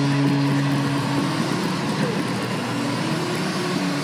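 Arena goal horn sounding its steady multi-note blast over a cheering crowd, signalling a home-team goal; the horn stops about a second in, leaving the crowd cheering.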